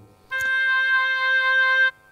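A single held oboe note, recorded and played back over the hall's loudspeakers as a demonstration. It sounds for about a second and a half and then cuts off. It has the oboe's nasal sound: a weak fundamental and a very prominent third harmonic.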